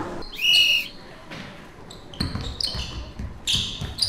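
A basketball dribbled several times on a hardwood court in the second half, with sneakers squeaking on the floor between the bounces. A brief high squeal sounds about half a second in.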